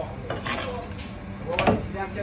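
Long steel fish knife clinking and knocking as it cuts through fish steaks on a cutting board: two sharp metallic knocks, one about half a second in and a louder one near the end.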